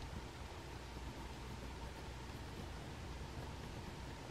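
Steady low hiss of room tone, with faint scratching of a pencil making small strokes on paper.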